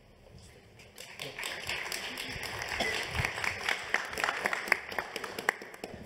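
Audience applause, starting about a second in and thinning out near the end.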